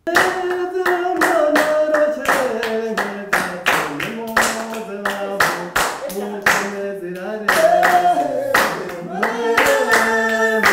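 Children singing a traditional Rwandan dance song, with steady hand-clapping at about three claps a second.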